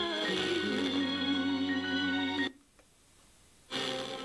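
Music from a distant FM broadcast received via sporadic-E, playing through a hi-fi tuner. About two and a half seconds in it cuts out suddenly for about a second as the tuner mutes while being stepped to the next frequency, then music comes back on the new station.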